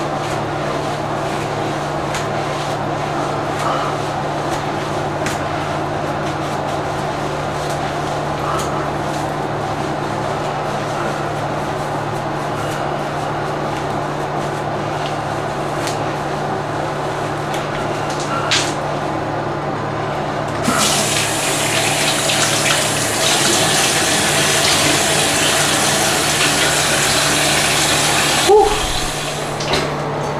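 Bathroom tap running into a sink for several seconds, starting about two-thirds of the way in and stopping shortly before the end. Before it there is only a steady low hum with a few soft handling clicks.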